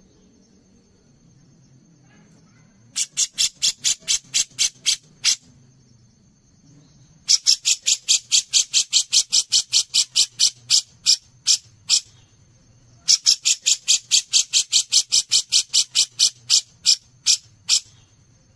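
Cucak jenggot (brown-cheeked bulbul) calling in three bouts of rapid, evenly spaced harsh notes, about four to five a second, each bout slowing near its end.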